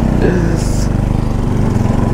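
Bajaj Pulsar NS 200 motorcycle's single-cylinder engine running steadily while riding along a rough dirt track, with a second motorcycle close alongside.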